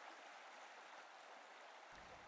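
Near silence: a faint steady hiss of background ambience.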